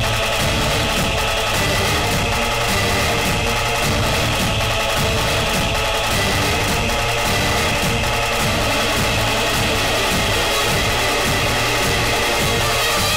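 Dramatic background score: held chords over a steady pulsing beat, at an even level throughout.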